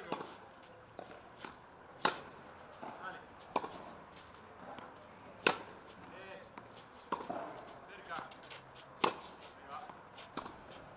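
Tennis ball struck by rackets in a baseline rally: sharp hits every couple of seconds, the loudest about two, five and a half, and nine seconds in, with lighter taps between.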